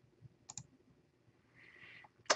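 Near silence: room tone, with one faint short click about half a second in.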